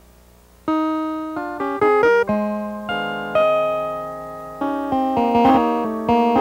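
Synthesizer keyboard played live: after a short pause, a run of notes begins just under a second in, each struck sharply and fading away, moving into lower, fuller notes and chords in the second half.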